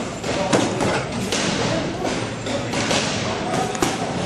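Boxing gloves landing punches during sparring: several thuds at irregular intervals.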